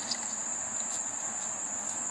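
A steady high-pitched whine over a low, even hiss, with no break or change.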